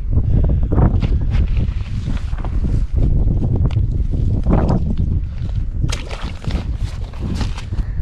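Wind rumbling on the microphone over scattered knocks and rustles of movement on snow-covered ice.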